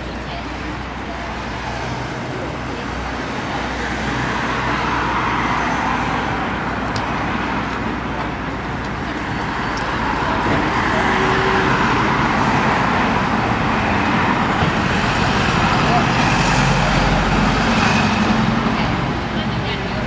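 Steady, noisy background ambience with indistinct voices in it and a low hum. It slowly swells in level through the middle and eases off near the end.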